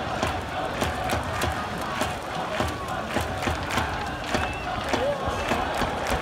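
Baseball stadium crowd cheering and chanting, with sharp beats in a steady rhythm of about three a second over a continuous crowd din.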